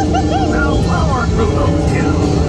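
Radiator Springs Racers ride car running along its track, a steady rumble, with voices over it.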